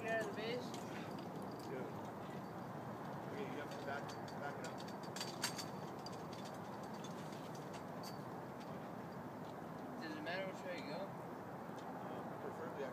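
Indistinct voices over steady outdoor background noise, with a few sharp clicks about five seconds in.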